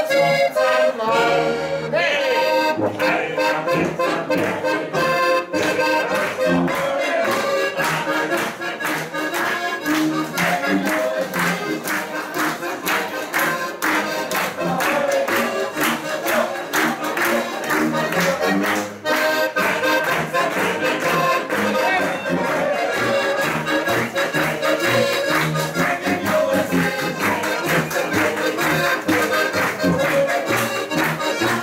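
Styrian button accordions (Steirische Harmonika) with a tuba bass playing Alpine folk music to a steady beat. From about two seconds in, sharp regular strokes run with the beat: the audience clapping along.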